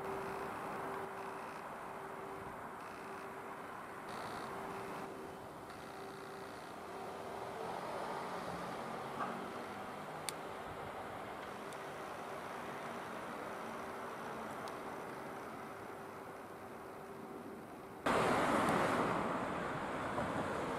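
Steady outdoor background noise of distant road traffic, with a faint hum that comes and goes. About two seconds before the end it switches abruptly to much louder traffic and wind noise.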